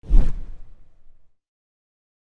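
A whoosh transition sound effect that comes in suddenly with a deep low thud and dies away within about a second and a half.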